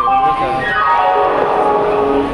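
Railway station public-address chime: a melody of held notes stepping down in pitch, starting about half a second in, with voices underneath.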